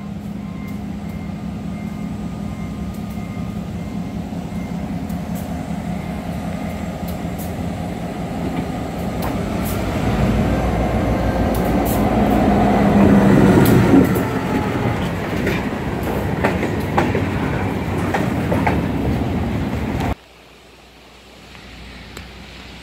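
Diesel freight locomotive approaching and passing close by. Its engine grows steadily louder to a peak about 13 seconds in, then gives way to freight-car wheels clicking over the rail joints. The sound drops off abruptly about 20 seconds in, leaving faint outdoor noise.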